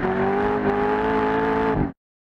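Chevrolet Corvette Z06's V8 held at high revs as it spins its rear tyres in a smoky donut, the engine note steady and creeping slightly upward. The sound cuts off abruptly near the end.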